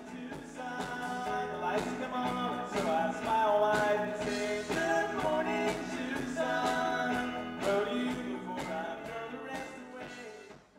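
Live rock band playing, with electric guitars and a drum kit struck steadily throughout.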